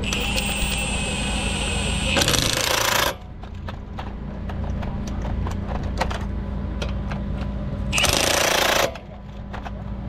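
Impact wrench on a lug nut: a high whir for about two seconds, then about a second of loud hammering, and a second hammering burst near the end as another nut is snugged. A steady low hum runs beneath.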